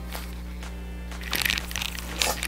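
Faint background music, then a short stretch of rustling and crinkling about a second and a half in as a pleather squishy toy and its paper tag are handled.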